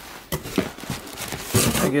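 Cardboard and boxed retail packaging rustling, scraping and knocking as boxes are shuffled and lifted out of a cardboard carton, in a run of short, uneven bursts.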